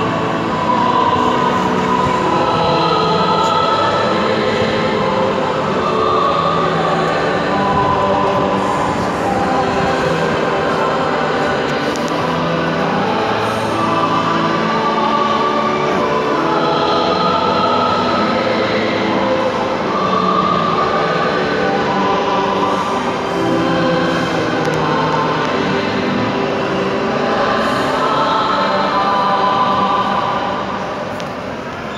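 A choir singing with long held notes, sounding in the large reverberant space of a church.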